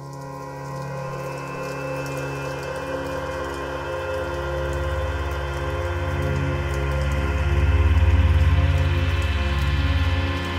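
Ambient electronic drone music fading in at the start of a track: held synth tones over a low pulsing bass, with a rain-like hiss layered on top. It swells steadily louder and peaks about eight seconds in.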